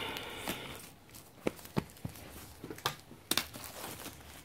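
Clear plastic packaging bag crinkling as a card puzzle box is slid out of it: a rubbing rustle for about the first second, then several sharp crackles.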